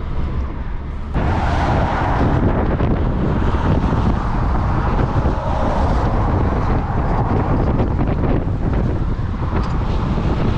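Strong wind buffeting the microphone over the road noise of a motorhome driving at highway speed; it gets louder and harsher about a second in.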